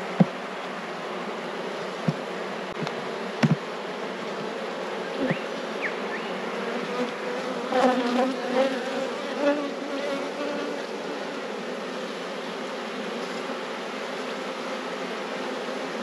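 Honeybee colony humming steadily from an open hive, with a few sharp knocks in the first five seconds. The hum grows louder for a moment about halfway through.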